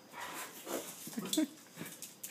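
Small dog giving a short, rising whine a little past halfway, amid soft scuffling noises around a metal food bowl.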